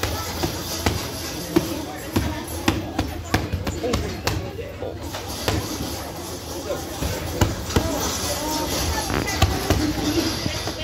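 Boxing gloves striking handheld focus mitts: a run of sharp smacks at an irregular pace, often two or three in quick succession as combinations.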